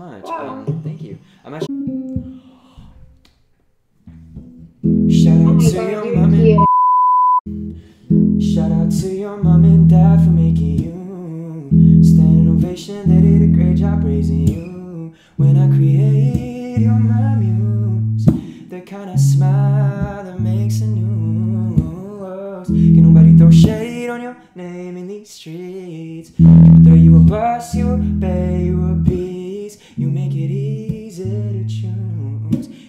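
A male voice singing along to a strummed guitar, the chords changing every second or two. A short, steady high beep cuts in about seven seconds in.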